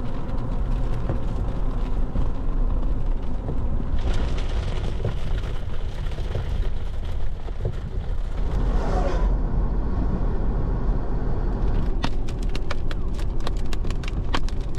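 Vehicle driving on a wet highway, heard from a camera mounted outside on the hood: a heavy, steady rumble of wind and road noise, with a hiss of tyre spray in the middle. An oncoming semi-truck goes by with a falling pitch about two-thirds of the way in, and a rapid run of sharp ticks comes near the end.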